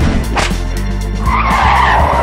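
Tyre-screech sound effect over theme music with a steady bass beat. The screech starts a little past a second in and is the loudest sound, after a brief sweep about half a second in.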